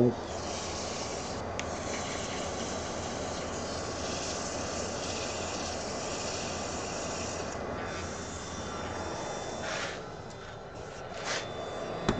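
Abrasive paper held by hand against a wooden goblet blank spinning on a wood lathe: a steady rasping hiss over the lathe's running hum. It breaks briefly once and stops about ten seconds in.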